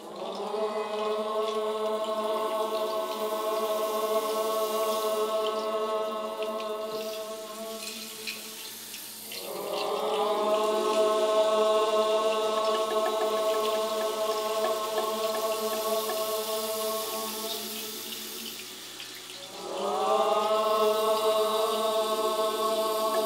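Mixed choir chanting long, sustained Om chords in several-part harmony, three of them, each held about eight to nine seconds, with the voices bending up into pitch at the start of each and a short breath between.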